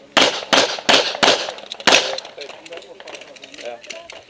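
Pistol shots fired in quick succession in a practical shooting stage: four about a third of a second apart, then a fifth after a short pause, each a sharp crack with a brief echo.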